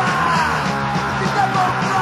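Stenchcore music, crust punk with a strong metal influence, playing loud and dense, with shouted vocals.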